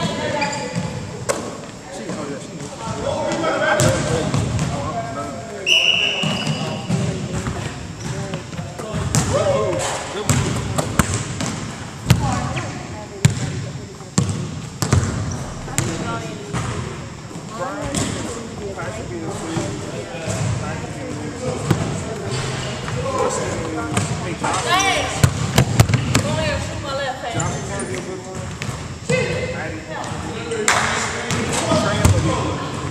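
Basketballs bouncing on a hardwood gym floor in a large hall, with repeated sharp bounces under the indistinct chatter of many players; a brief high squeak about six seconds in.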